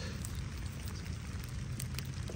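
Rain falling: a steady hiss with a few faint ticks of drops.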